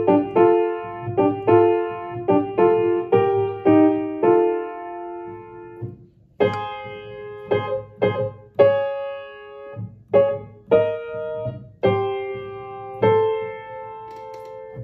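Grand piano playing the alto voice part of a choral anthem as a rehearsal line, in separately struck notes, mostly two at a time, with a brief break about six seconds in.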